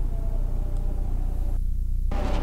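A steady low rumble or hum, with the higher sounds cutting out briefly near the end while the rumble carries on.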